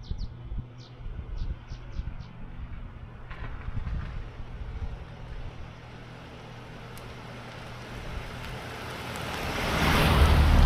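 A Kia SUV drives slowly toward and over a camera set low on a driveway. Its engine and tyre noise build steadily over the last few seconds and are loudest at the end. Birds chirp a few short notes in the first two seconds.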